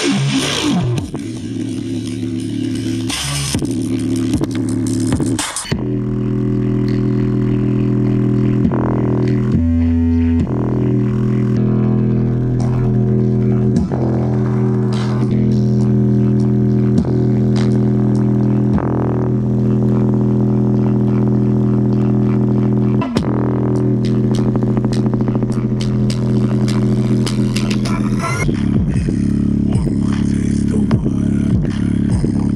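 Bass-heavy music played at high volume through a JBL Flip 5 portable Bluetooth speaker with its grille off, in a heavy-bass stress test. Long, steady low bass notes dominate throughout.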